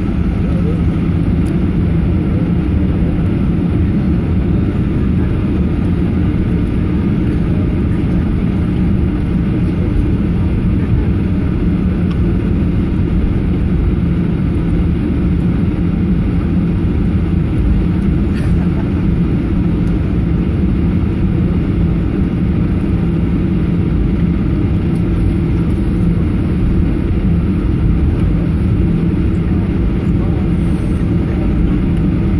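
Jet airliner cabin noise while taxiing: the engines run at low taxi power, making a steady low drone that does not change, heard from inside the cabin.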